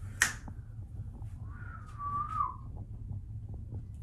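A sharp click just after the start, then a short whistled note about two seconds in, held at one pitch for under a second and dipping at the end, over a low steady hum.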